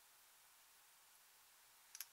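Near silence: faint steady hiss, with one short light tick near the end.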